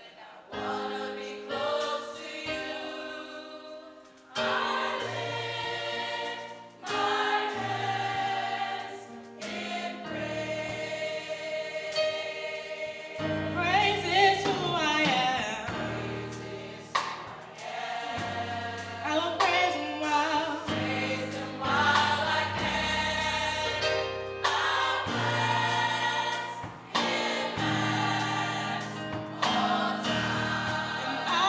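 Gospel choir singing in harmony, with a low bass line under sustained chords, in phrases a few seconds long broken by short pauses.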